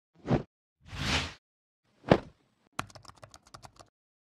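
Channel-logo intro sound effects: a short thump, a whoosh, a sharp hit, then a quick run of about a dozen keyboard-typing clicks as the web address is typed out.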